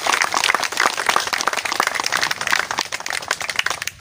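A small crowd applauding with hand claps, dying away just before the end.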